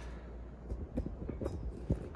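Faint, light clicks and taps from a plastic computer fan being handled and turned over in the hands, several in the second half, over a steady low hum.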